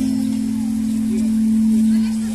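A street singer holding one long sung note into a microphone over an acoustic guitar, the note swelling louder towards the end.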